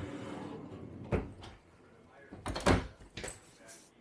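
Pantry cabinet doors pulled out of their side pockets and swung shut: a second of sliding rub, a sharp knock about a second in, then a few more knocks near the three-second mark as the glass-paned double doors close.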